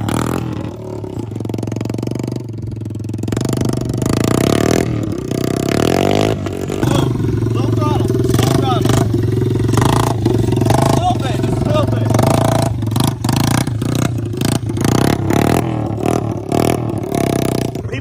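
Small 90cc Yamaha dirt-bike engine revving and easing off as the rider lifts the front wheel and holds wheelies. It runs quieter at first and climbs in level after about four seconds.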